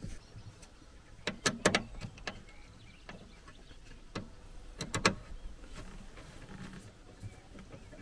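Scattered sharp clicks and small knocks of hand tools and wiring being worked on in a car's engine bay: a quick run of clicks about one to two seconds in, a single click about four seconds in and a close pair about five seconds in.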